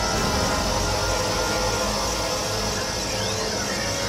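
Cartoon magic sound effect of a soul being sealed into a doll: a steady rushing, humming wash layered with dramatic background music, with sweeping tones near the end.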